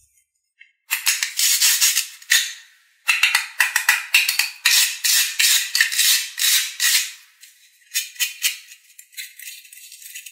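The Velcro-type fastening patch of a plastic toy cutting-fruit orange being pulled apart: a long crackling tear starting about a second in, pausing briefly, then running on to about seven seconds, followed by a few shorter rips.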